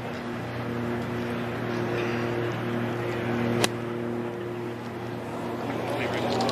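A golf iron striking the ball from the fairway: one sharp click a little past halfway through. Under it runs a steady low mechanical hum with outdoor background noise.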